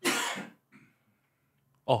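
A man clears his throat once, a sudden sharp burst of about half a second, with a faint short catch of breath just after.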